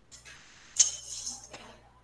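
A brief burst of clattering and clinking, with one sharp click a little under a second in as the loudest moment, heard through video-call audio that opens with it and cuts off after it.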